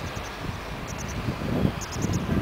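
Wind buffeting the microphone outdoors, a steady noisy rumble with no clear engine note, with a few faint high ticks about a second in and near the end.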